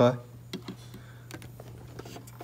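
Faint, scattered light clicks and taps over a steady low hum, after a last spoken word at the very start.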